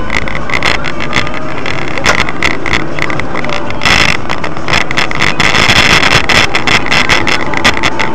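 Car driving, heard from inside the cabin through a dashcam: steady road and wind noise with many short clicks and rattles, a little louder for a few seconds in the second half.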